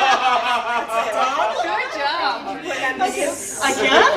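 Group chatter: several people talking over one another, with chuckles.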